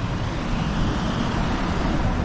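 Road traffic: a car driving past on the street alongside, its tyre and engine noise swelling through the middle, over steady traffic noise.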